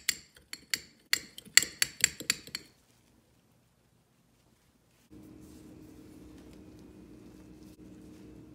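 A metal fork beats egg yolk in a small glass bowl: a quick, irregular run of clinks of metal on glass, about four a second, stopping about two and a half seconds in. After a silent gap, a low steady hum sets in a little past halfway.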